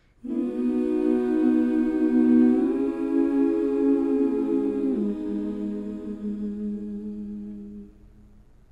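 Soundtrack music of wordless humming voices holding long, layered notes. The notes shift in pitch about three seconds in and again about five seconds in, then fade near the end.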